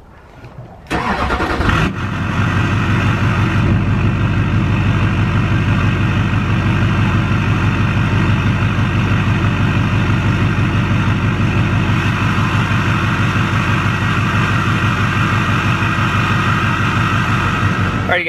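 LBZ Duramax 6.6-litre V8 turbodiesel being started: about a second of cranking, then it catches and settles into a loud, steady diesel idle.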